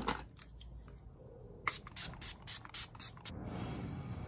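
Makeup setting spray pumped from a fine-mist bottle onto the face: a quick run of about seven short spritzes, roughly four a second, starting a little before halfway.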